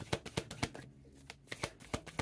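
A deck of oracle cards being shuffled by hand: a quick run of card flicks, a short pause about a second in, then a few more flicks.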